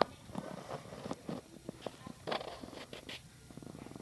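Handling noise from the recording phone being shifted against a nearby surface: a sharp click at the start, then irregular rustling, scraping and small knocks.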